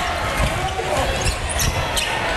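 Basketball game sound in an arena: crowd noise throughout, a ball bouncing on the hardwood court in low thumps, and short high squeaks in the second half.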